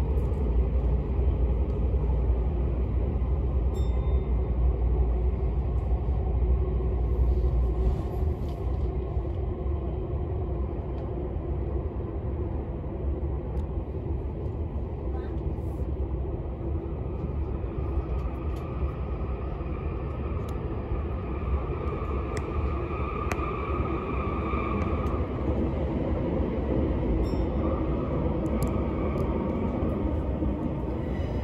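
Running noise of an Odakyu MSE 60000-series Romancecar heard inside a passenger car in a subway tunnel: a steady rumble of wheels and track. The heaviest low rumble eases about eight seconds in, and a faint whine comes up in the second half.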